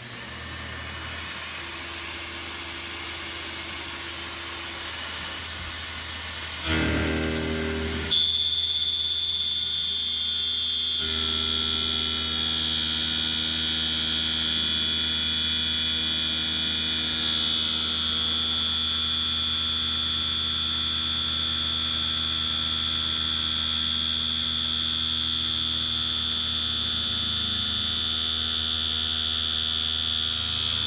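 Tormach PCNC 770 CNC mill running its cycle: the spindle winds up with a quickly rising whine about seven seconds in. Then a carbide end mill cuts a step into quarter-inch steel plate, a steady high-pitched machining whine that holds to the end.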